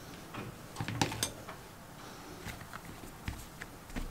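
Soft scattered taps and light knocks of a kitchen knife and pieces of bread dough on a table as the dough is cut and the pieces pulled apart, the strongest about a second in.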